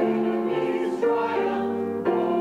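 Small mixed choir of men and women singing a psalm setting, holding each note and moving to the next about every half second.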